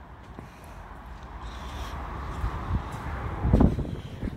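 Low rumble of wind buffeting the microphone, with handling noise as the camera is carried along. It builds after about a second, with a louder bump about three and a half seconds in.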